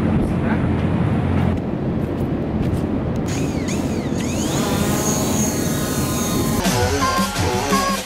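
DJI Mavic Pro quadcopter's motors spinning up on the ground: a high propeller whine comes in about midway and rises in pitch as the drone lifts off. Electronic dance music with a steady beat starts near the end.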